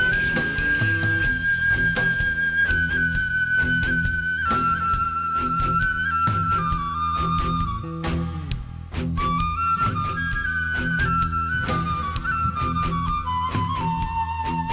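Transverse flute playing the lead melody of an instrumental passage over a live band's bass and drums. Long held notes step slowly downward, a short break comes about eight seconds in, then a new phrase climbs and descends again.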